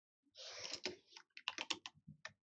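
Computer keyboard being used: a brief scuffling sound, then a quick run of about five key clicks near the end.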